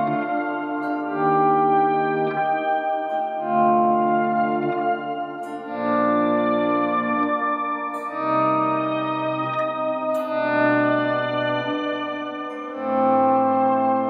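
Clean electric guitar chords played as volume swells through a Morley Pro Series volume pedal, each chord fading in without a pick attack and ringing out under a shimmer reverb from an EHX Oceans 11 pedal. A new chord swells in about every two seconds.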